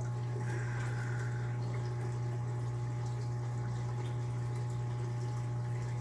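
Reef aquarium equipment running: a steady low pump hum with a wash of circulating water. A short faint higher tone sounds about half a second in.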